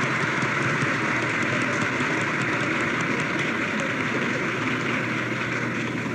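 An audience applauding steadily, a dense patter of many hands clapping, heard through an old speech recording.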